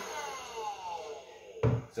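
Battery-powered Lazyboi cordless leaf blower's fan motor spinning down after being switched off, its whine falling steadily in pitch and fading. A single thump about a second and a half in as the blower is set down on the table.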